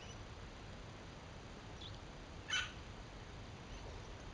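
A steady low rumble of wind on the microphone, with faint high chirps and one brief, louder bird chirp a little past halfway.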